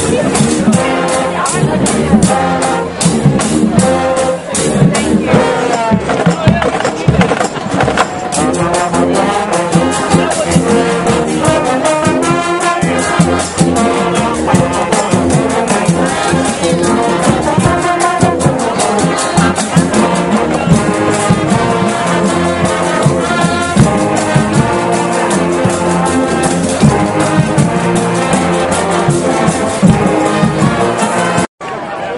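Marching band playing loudly, brass carrying the tune over a steady beat of drum hits, with voices of people close by.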